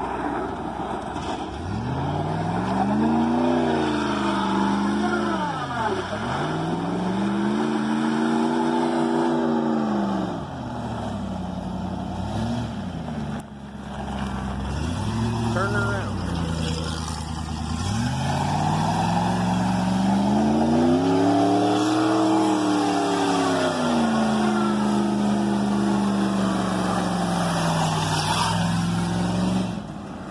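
Small truck's engine revving up and easing off again and again, its pitch climbing and falling several times as it drives along, passing close by about halfway through.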